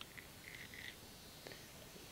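Near silence: room tone, with a few faint brief high blips in the first second.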